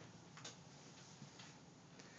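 Near silence: faint room tone with two faint clicks, about half a second in and near a second and a half.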